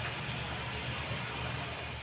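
A steady hum and hiss of background noise with no distinct sounds in it, fading out near the end.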